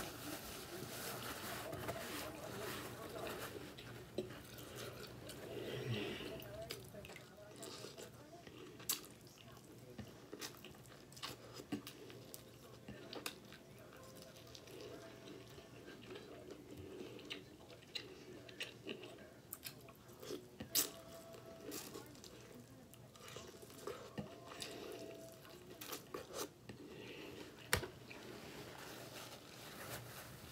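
A person chewing and eating shrimp-boil food close to the microphone: quiet mouth and chewing sounds with scattered sharp clicks.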